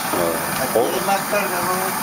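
Small brass pressure stoves burning with a steady, even rush while pancakes fry in a pan on one of them. Voices talk over it.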